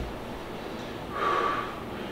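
A man's short, forceful breath, about half a second long, just over a second in, as a bodybuilder moves into a pose.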